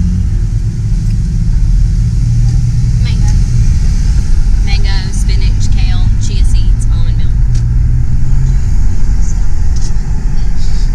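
Steady road and engine rumble inside a moving van's cabin, loud and low, with brief faint voices in the middle.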